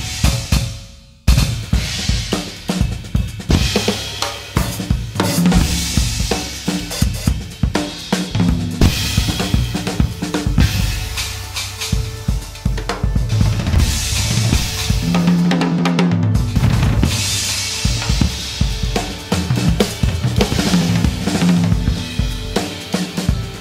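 Solo jazz drum kit improvising: busy, irregular strokes on snare, bass drum, toms and cymbals, with toms ringing out here and there. It breaks off briefly about a second in, then comes back with a loud hit.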